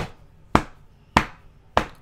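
Four sharp knocks, evenly spaced a little over half a second apart: a hand banging on a desk.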